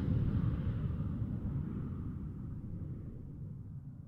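Low rumbling tail of a whoosh-and-boom transition sound effect, fading out steadily.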